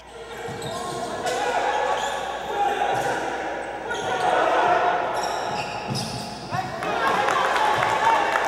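Natural game sound from an indoor basketball court: a ball bouncing on the hardwood amid the voices and shouts of players and spectators, echoing in a large hall.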